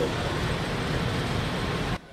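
Steady, even background noise of a large indoor exhibition hall, with no distinct events. It cuts off suddenly at the end.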